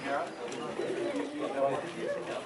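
Indistinct voices of people talking, several overlapping.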